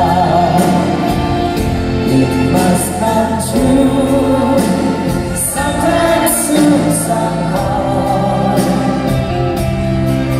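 Live band and choir performing a slow Christmas ballad, with sustained sung chords held over the accompaniment.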